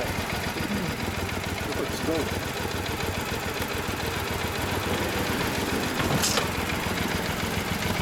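Classic Kawasaki motorcycle engine idling steadily, with a rapid even pulsing.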